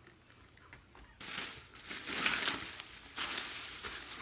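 Plastic shopping bag rustling and crinkling as items are rummaged through. It starts suddenly about a second in and keeps going.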